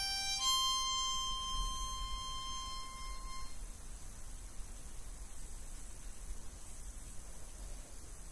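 Hohner harmonica in C playing the song's closing notes: a short note steps up into one long high note, held for about three seconds before it stops.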